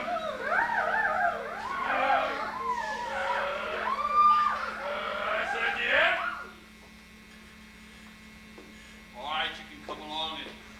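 Several voices wailing together in overlapping, sliding pitches, stopping suddenly about six and a half seconds in. A brief spoken sound comes near the end.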